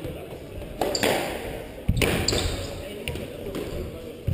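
Squash ball struck and hitting the court, a handful of sharp hits that echo off the walls over a few seconds.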